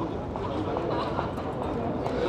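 Indistinct murmur of a large outdoor crowd of onlookers, with a few small scattered clicks.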